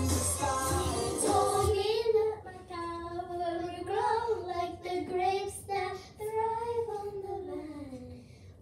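A young girl singing a song, holding notes that bend in pitch; the last long note slides down and fades near the end.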